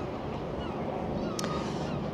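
Steady wind and outdoor background rumble on an exposed seafront, with a few faint, short, high bird-like calls.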